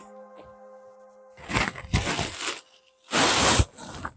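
Knit sweater fabric rustling as it is handled close to the microphone: a rough stretch in the middle and a shorter, louder rustle near the end. Soft background music plays under it and stops about three seconds in.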